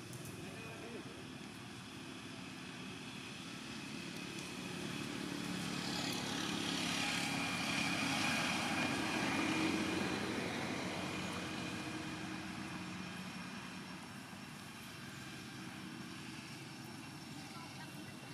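An engine passing by. It swells over several seconds, is loudest about eight to ten seconds in, then fades away. It has a steady hum, and a whine that falls in pitch as it goes past.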